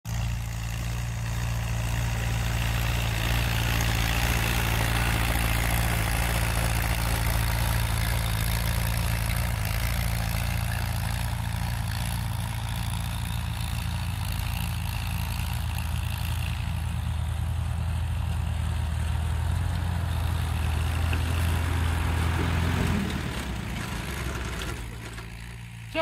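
Vintage Allis-Chalmers tractor's four-cylinder engine running steadily. The engine note shifts about 23 seconds in and then drops in level near the end.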